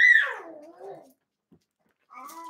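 A pet animal's cry: one call that rises briefly, then slides down in pitch over about a second.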